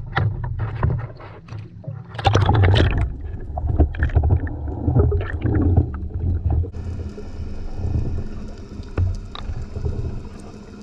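Sea water sloshing and splashing against an action camera at the surface, with a low rumble. About two-thirds of the way in the camera goes under, and the sound turns to a muffled underwater wash with a steady hum of several tones.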